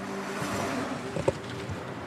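A car driving, heard from inside the cabin as a steady road and engine noise, with one short click a little over a second in.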